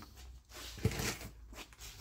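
Faint rustling and handling noise with a single soft knock just under a second in.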